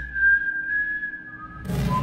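A single high, steady whistle-like tone in a film teaser's soundtrack, held for about a second and a half and fading out, with a short lower tone near its end.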